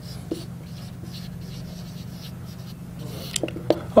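Marker pen writing on a whiteboard: a run of short, light scratchy strokes, with a couple of small taps near the end.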